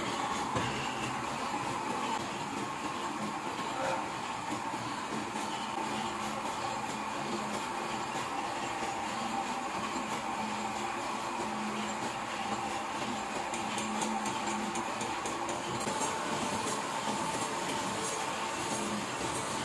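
An Original Heidelberg offset-letterset printing press running steadily. Its mechanism makes an even, continuous machine noise with a faint steady whine.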